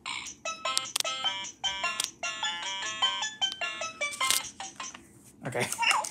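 VTech Rhyme and Discover Book toy playing an electronic melody of short, stepped beeping notes, which stops about five seconds in.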